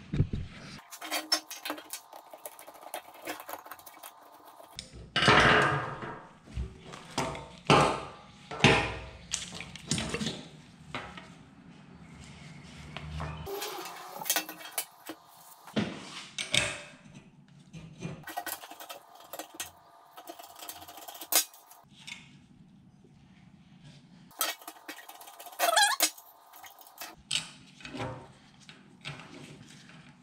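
Intermittent metallic clinks, clanks and knocks as a fuel-pump sending unit's steel tubing, clamps and pump body are handled and worked apart with hand tools on a workbench. The clatter comes in uneven bursts, busiest in the first third.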